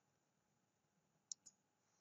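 Two quick, faint computer mouse clicks about a second and a half in, against near silence: selecting the Mirror command in the CAD program.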